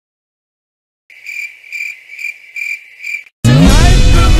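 A cricket chirping, about five even chirps roughly half a second apart, after about a second of dead silence. Loud music cuts in near the end.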